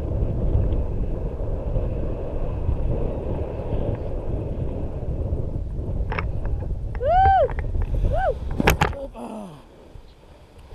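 Wind rushing over the camera microphone of a tandem paraglider on final approach, stopping abruptly about nine seconds in as the glider touches down. Just before, a person gives two short high cries, and a sharp knock comes with the landing.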